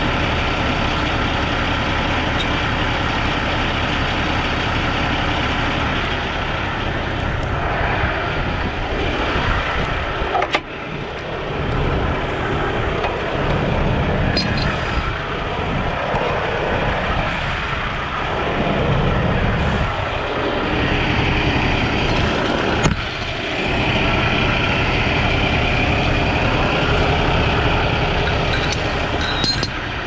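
Heavy diesel truck engine idling steadily at close range, with two sharp clicks, one about a third of the way in and one past the middle.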